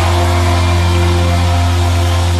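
Live worship band holding a sustained chord under a deep, steady bass note, with no singing.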